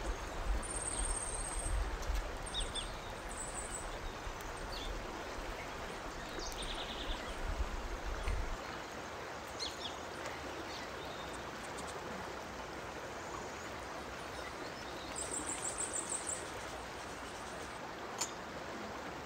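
Field-recorded nature ambience: a steady rushing hiss, with short high-pitched chirp trills about a second in and again near the end and scattered fainter chirps between. A low rumble underlies the first half and stops about eight seconds in.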